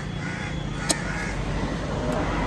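Crows cawing over a steady low rumble, with one sharp click about a second in.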